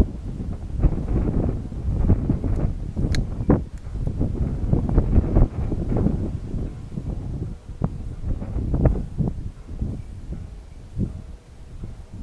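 Wind buffeting the microphone in uneven gusts, with a few faint clicks.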